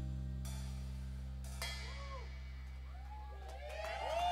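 A live rock band's held low chord ringing out and slowly fading as a song ends, with a couple of light cymbal strikes. Short swooping, rising-and-falling tones come in near the end.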